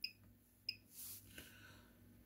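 Two brief clicks about 0.7 seconds apart from key presses on the front panel of an HP8182 DC electronic load as it is set to a 200-watt constant-power test, with near silence around them.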